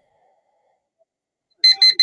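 Online countdown timer's alarm beeping as it reaches zero. After about a second and a half of near silence, a quick run of short, high, evenly spaced beeps starts near the end.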